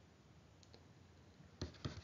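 Quiet room tone, then a few faint, sharp clicks near the end, from a stylus tapping on a drawing tablet.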